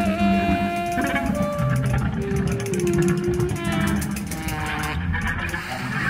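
Jazz trio recording of saxophone, drums and keyboards: long held melody notes that change pitch every second or so, over a steady beat of drums and cymbals.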